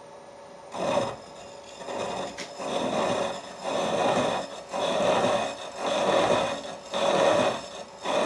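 Slitting saw on a milling machine cutting into a metal workpiece, fed very gently, starting about a second in. The rasping cut swells and fades about once a second. The saw is not particularly sharp.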